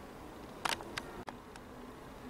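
Two short handling clicks, a sharp one and then a smaller one, as the plastic nail tip on its display card is moved, over faint steady hiss.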